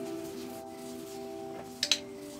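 Background music with sustained held notes. Near the end there is one short, sharp click from a handler's animal-training clicker, the signal that the rat has correctly found the target scent.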